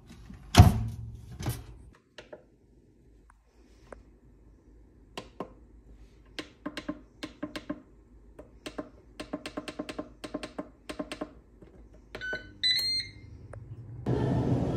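Ninja Speedi air fryer: its lid is shut with a knock about half a second in, then a quick run of clicks as the control-panel buttons are pressed repeatedly, and a short series of high electronic beeps near the end.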